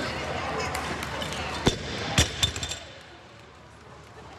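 A barbell loaded to 350 lb with rubber bumper plates is dropped from a power clean onto the gym floor. It lands with a heavy thud about 1.7 s in, a louder one about half a second later, then a few smaller bounces before it settles.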